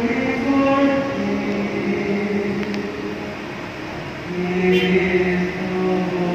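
A group of voices singing a slow hymn, holding long notes that move from one pitch to the next about every second.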